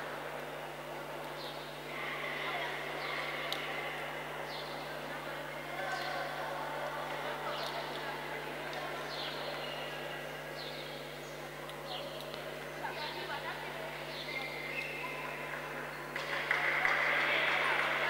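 Background chatter of voices in an echoing indoor sports hall during a stoppage in play, with occasional short sharp knocks and a steady low electrical hum; the noise of voices swells near the end.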